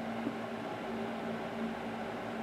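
Steady low background hum with a faint constant tone, no distinct events.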